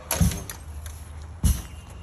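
Rubber lacrosse ball thrown against a rebounder and caught back in the stick's pocket during a wall-ball drill: sharp smacks, twice, about a second and a half apart.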